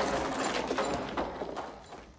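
Film soundtrack sound effects: a dense, noisy rush that fades away toward the end.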